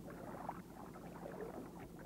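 Faint boat-deck ambience: water lapping, with small scattered ticks and knocks over a low steady hum.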